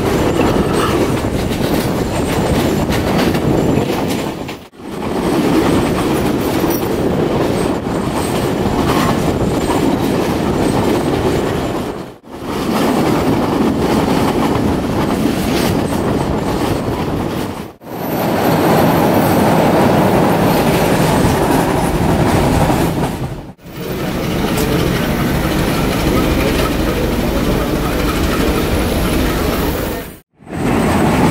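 Passenger train running on the rails, heard from aboard: a steady rumble of wheels with clickety-clack over rail joints and some wheel squeal. The sound drops out briefly four times.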